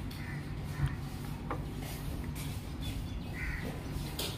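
Birds calling outside, two short calls, one near the start and one about three and a half seconds in, over a steady low hum, with a brief knock just under a second in.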